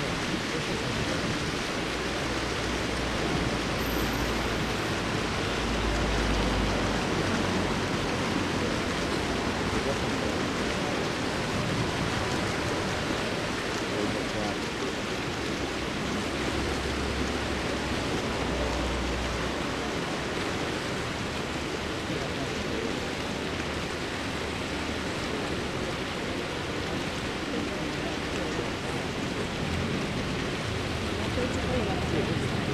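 Steady rushing noise of wind on the microphone, with low rumbling gusts a few seconds in and again a little past halfway.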